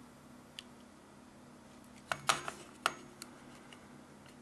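A few sharp clicks and taps of hard plastic and metal about two to three seconds in, with one lighter click before them, as multimeter test probes are lifted off the calculator's circuit. A faint steady hum runs underneath.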